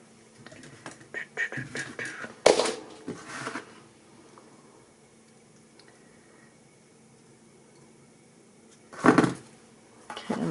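Hand-crafting handling sounds: aluminum craft wire being wrapped around a wire ornament frame, with scattered rustles and clicks and one sharp click about two and a half seconds in. Near the end, a single louder knock, as of pliers set down on a wooden table.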